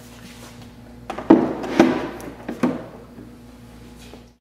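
Wooden organ key cheek side panels being handled and set against a keyboard stack: three short wooden knocks between about one and three seconds in, with lighter handling noise around them.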